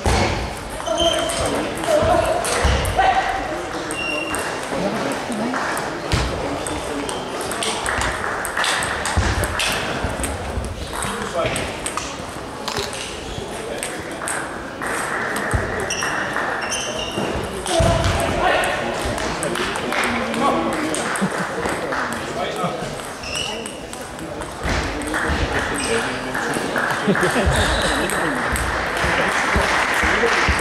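Table tennis rallies: the ball clicking sharply off the bats and the table in quick succession, over voices echoing in a sports hall.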